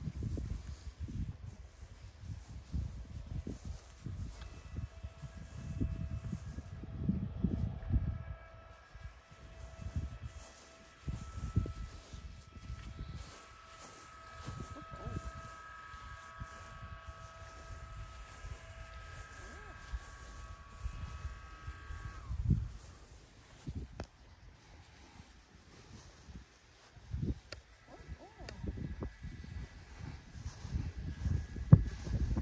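Wind buffeting the microphone in irregular gusts in an open field. Under it a faint steady mechanical whine of several tones comes in a few seconds in, then drops in pitch and stops about two-thirds of the way through.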